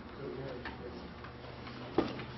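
Quiet meeting-room ambience: a steady low hum, faint low murmuring and a few small ticks, with a sharp click at the very end.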